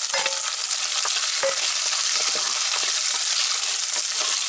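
Sliced shallots sizzling steadily in hot oil in an earthenware pot, stirred with a wooden spatula, with a few light knocks of the spatula against the pot.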